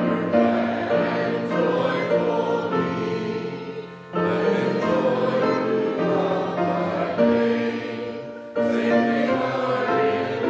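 A congregation singing a psalm together in sustained sung lines, with a new line starting about four seconds in and again near the end.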